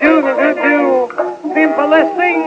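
Man singing the bouncy chorus of a 1924 popular song with a small dance band, the voice moving quickly from note to note. In the second half the band holds longer notes under the voice.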